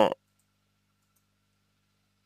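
A man's drawn-out hesitation sound "a" cuts off just after the start, followed by a pause holding only a faint low electrical hum.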